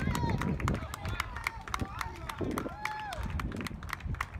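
Players and onlookers calling out and talking outdoors, several short shouted calls, with scattered sharp clicks and claps.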